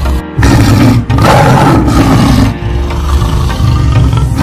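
Tiger growling and roaring in several long bursts with short breaks, over background music.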